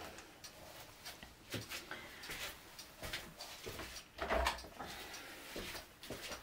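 Faint scattered clicks and knocks of small objects being handled, with one louder knock about four seconds in.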